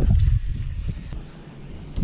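Wind buffeting the microphone: a low rumble, heaviest in the first half second, then easing off.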